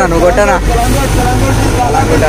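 Bus engine running with a steady low hum, with people talking loudly over it near the start.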